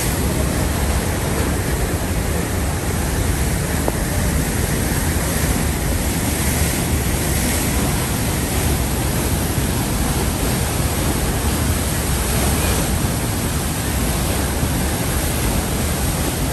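The Rhine Falls' water rushing and churning close by: a loud, steady roar of white water with a deep low rumble that does not let up.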